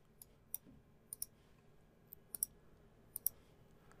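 Faint, sharp computer mouse clicks, about nine in all, several in quick pairs, spread over the few seconds.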